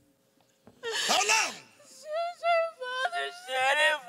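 A woman crying into a handheld microphone: a sharp sobbing cry with a falling pitch about a second in, then high-pitched whimpering wails.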